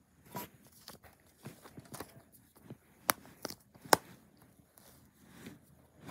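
Small plastic clicks and handling noises of a disc being pried off the centre hub of a DVD case, with two sharper clicks about three and four seconds in.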